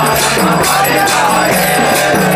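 Kirtan music: a group of voices chanting in melody over a steady low drone, with small hand cymbals (karatalas) clashing a few times a second on the beat.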